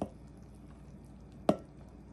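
Gram flour pouring from a plastic measuring cup onto shredded vegetables in a glass bowl, a nearly silent pour. One sharp knock sounds about one and a half seconds in.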